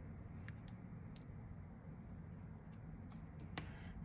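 Scissors snipping paper, trimming it from around the edge of a small glass cabochon: a few faint, separate snips over a low, steady room hum.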